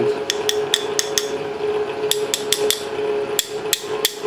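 Steel screwdriver shaft striking a knife's brass guard to knock it down the tang: about ten sharp metallic taps in three short runs. The guard is having a hard time coming off.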